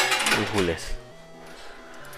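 A single sharp metallic clink of a coin dropping into a coin pusher machine, right at the start, followed by a short voice and steady background music.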